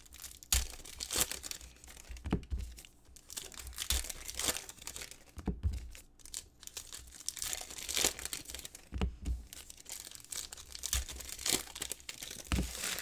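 Foil wrappers of Revolution basketball trading-card packs being torn open and crinkled by hand: an irregular run of short crackling rustles and tears.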